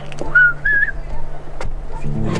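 Two short whistled notes about half a second in, the second a little higher and wavering, over a low steady background music bed.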